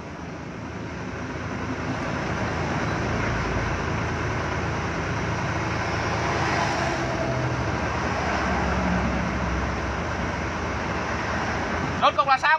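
Truck engine and road noise heard from inside the cab while under way, building over the first three seconds and then running steadily.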